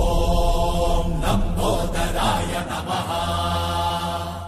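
Hindu devotional chanting to Lord Ganesh, with voices holding long, steady notes.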